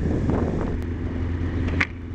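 Steady low engine hum and road noise from a moving vehicle, with a short, sharp high-pitched sound near the end.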